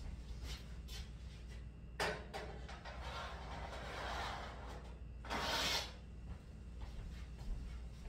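A sharp knock, then rustling and a brief louder rustle, from someone moving and handling things off camera in a kitchen, over a low steady room hum.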